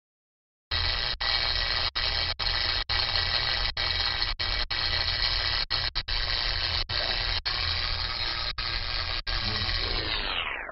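End-card sound effect: a steady rushing hiss like static, cutting in about a second in and broken by brief dropouts about twice a second.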